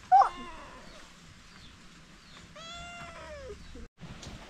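Two animal calls: a short, loud call right at the start and a longer call about two and a half seconds in that holds its pitch, then falls off.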